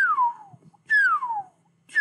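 A man whistling through pursed lips, slowly: separate single notes about a second apart, each sliding down in pitch.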